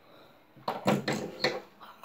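A quick run of short knocks and rustles from about half a second in: handling noise as a person sits down and settles in front of the camera.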